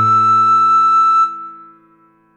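A recorder-like woodwind melody holds one note over a sustained backing chord. Both stop a little past halfway and fade away to near silence.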